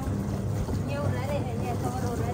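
Wind rumbling steadily on the microphone, with a faint voice in the background.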